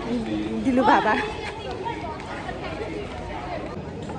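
A woman's voice close to the microphone for about the first second, then the chatter of people talking in the background.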